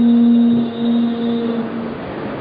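Male Qur'an reciter holding one long, steady note in melodic recitation, sung into a microphone; the note stops near the end.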